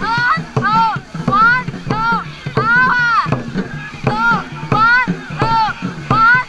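Dragon boat crew shouting a loud rhythmic call, a short rising-and-falling shout repeated nearly twice a second in time with the racing paddle strokes, over splashing water.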